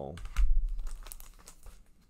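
A record album in its sleeve being picked up and handled: a dull low thump about half a second in, then crinkling and small clicks that die away.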